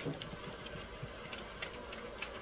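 Steady hum of honeybees clustered on and flying around a hive entrance, with a few faint ticks.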